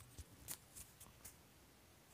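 Near silence, with a handful of faint, short clicks in the first second or so, then only quiet room tone.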